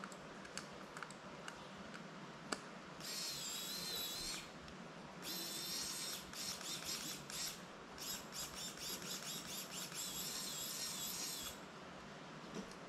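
Small electric screwdriver whirring in bursts while driving screws into a drone frame, with a high wavering whine. One run lasts about a second and a half; a longer spell follows, broken into many short on-off pulses. A few small clicks come before it.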